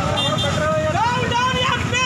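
A man speaking Telugu in a steady, continuous statement, over a low steady background rumble.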